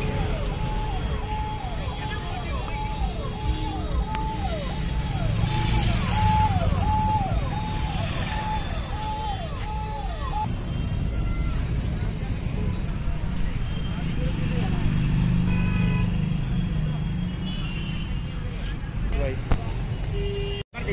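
Busy street-market noise: a steady low traffic rumble and indistinct chatter. Over it, a repeating electronic tone sounds just under twice a second, each note dropping in pitch at its end, and stops about ten seconds in.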